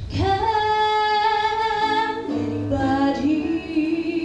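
A girl singing solo: one long held note for about two seconds, then a few shorter, lower notes.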